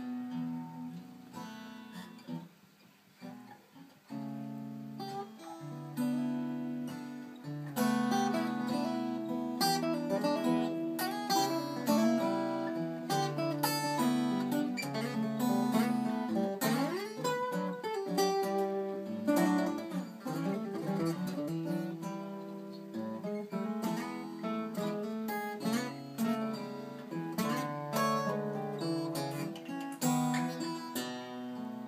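Two Martin steel-string acoustic guitars fingerpicking an improvised slow blues in E. The playing is softer and sparser a couple of seconds in, grows fuller from about eight seconds, and has notes bent in pitch around the middle.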